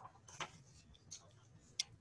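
Faint rustles and a few short clicks of sheets of paper being handled and sorted at a desk, the sharpest click near the end.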